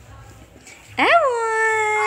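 An eight-month-old baby's drawn-out vocal call, starting about a second in: one long cry-like note that rises quickly and then holds steady.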